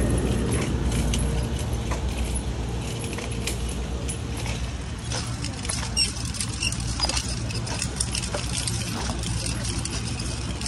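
Wire shopping cart being pushed over a concrete sidewalk, its basket and wheels rattling with many small clicks over a steady low rumble.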